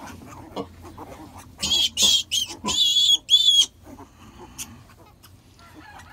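Newborn piglets squealing while being handled: a quick run of four or five short, high-pitched squeals starting about a second and a half in.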